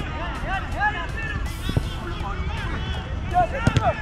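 Footballers calling and shouting across a five- or seven-a-side pitch, with a few sharp knocks of the ball being kicked, the loudest a quick run of them near the end.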